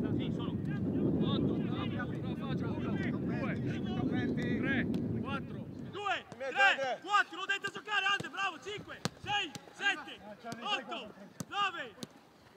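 Footballers' training session: for about the first half, a low rumble of wind on the microphone with faint voices. Then, with the rumble gone, players calling and shouting to each other, mixed with the sharp thuds of footballs being kicked in a quick passing drill.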